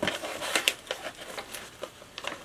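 Plastic dog-treat pouch crinkling and crackling as it is torn and pulled open by hand: a quick run of sharp crackles, densest in the first second, then a few scattered ones.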